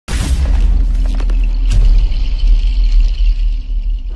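Loud synthesized intro stinger: a deep rumbling boom, with a few sharp glitchy hits in the first two seconds and a high shimmer over it.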